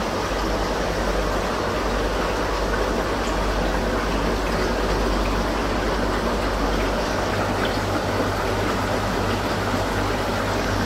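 Aquarium water bubbling and trickling steadily from air stones and filters, over a steady low hum of pumps.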